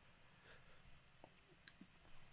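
Near silence: room tone with a few faint, short clicks in the second half.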